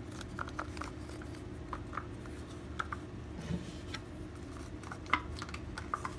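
Scattered short scrapes and clicks of a plastic squeegee spreading epoxy pore filler across a guitar's wooden back, over a steady low hum.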